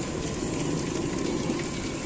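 Hot oil sizzling steadily in a blackened iron kadai as a batch of small mungodi (moong dal fritters) deep-fry.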